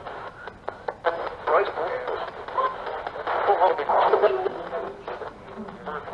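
A handheld scanning radio used as a spirit box, sweeping through stations: short, chopped fragments of broadcast voices and static, broken by frequent clicks as it jumps from channel to channel.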